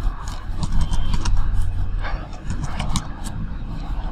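Computer keyboard typing: irregular, quick key clicks as commands are entered, over a steady low rumble.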